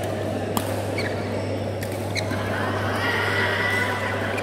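Badminton hall din: a steady low hum under a dense background of hall noise, with a few sharp clicks of rackets striking shuttlecocks in the first two seconds and a high drawn-out squeak, like a court shoe on the mat, in the last second.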